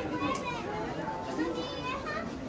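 Indistinct chatter of a crowd of shoppers, many voices overlapping, some of them high-pitched.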